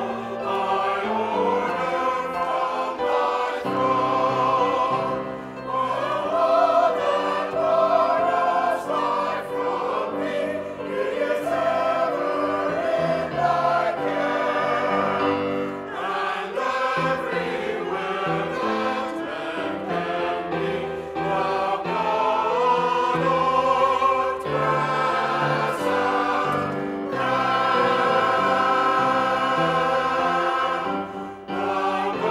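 Mixed church choir of men and women singing an anthem in sustained, moving phrases.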